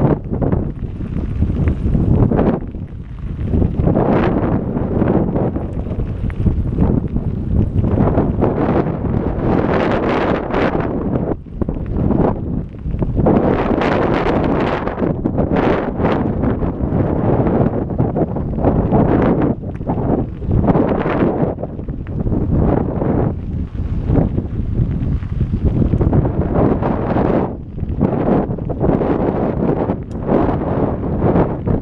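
Wind buffeting the microphone of a camera on a moving mountain bike: a loud rumble that keeps swelling and easing.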